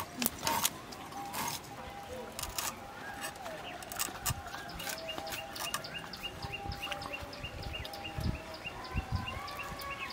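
Scrapes, clicks and a few dull knocks of a koi fish being scaled and cut against a boti blade. From about three seconds in, a bird chirps in a fast, even series of about four short chirps a second.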